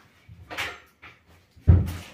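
A short rustle, then a single loud thud near the end, like something wooden being shut.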